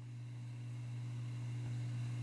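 A steady low electrical hum with a fainter, higher tone above it, slowly growing louder.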